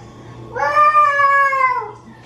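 One long, high-pitched vocal call, rising and then falling in pitch, starting about half a second in and lasting over a second.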